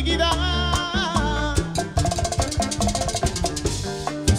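Live bachata band playing an instrumental passage: a lead guitar melody over bass and percussion, turning to a fast run of repeated notes about halfway through.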